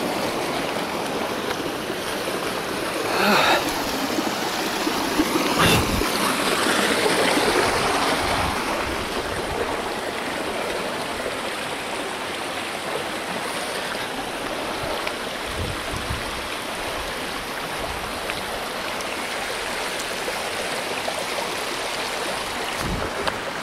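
Steady rushing, water-like noise, with two sharp knocks a few seconds in, easing off a little after the first third.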